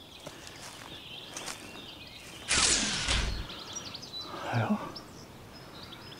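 Faint songbird chirps over a quiet woodland background, broken about two and a half seconds in by one loud rustle that lasts under a second.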